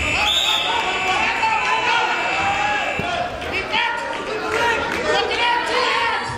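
Scoreboard buzzer sounding one steady, high-pitched tone for about three seconds, signalling that time has run out in the wrestling bout, over the chatter of voices in a large gym.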